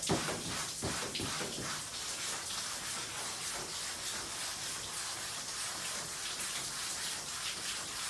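Hand brush scrubbing wet, soapy kimono cloth on a steel washing table in traditional araibari washing, over a steady hiss of running and splashing water.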